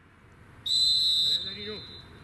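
Referee's whistle blown in one steady, high-pitched blast of under a second, which then trails off faintly. It signals that the free kick may be taken.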